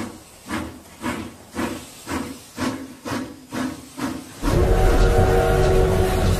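Steam locomotive chuffing in an even beat of about two puffs a second. About four and a half seconds in, a sudden loud, steady blast of steam begins, with a held whistle-like tone over a heavy hiss.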